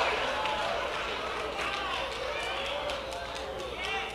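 Congregation voices calling out faint, scattered responses during a pause in the sermon, heard low in a large hall.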